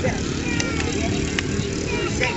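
Motorcycle engine idling steadily, under a murmur of voices, with two faint clicks.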